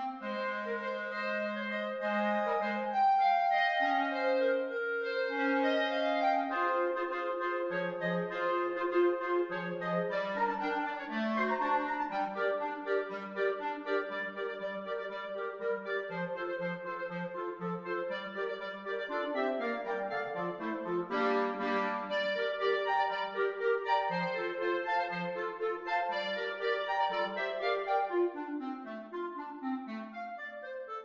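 A clarinet quartet playing an arrangement of traditional sea shanties, several clarinet lines moving together in steady note-by-note motion.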